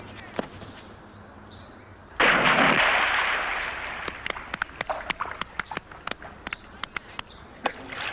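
A person plunging into a swimming pool from the high diving platform about two seconds in: one loud splash that dies away over a couple of seconds, followed by many short, sharp ticks of falling water and drips.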